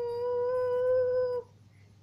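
A high voice holding one long sung note on the word "me", steady and a little rising, that stops about a second and a half in.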